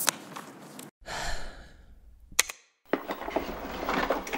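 A short breathy rush of air like a sigh about a second in, fading away, followed by a sharp click; near the end a soft hissing rustle with a few clicks.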